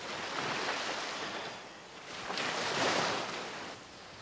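Sea water washing in two swells, the second and louder one about two seconds in.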